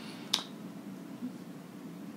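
A single short, sharp click about a third of a second in, over a steady low room hum.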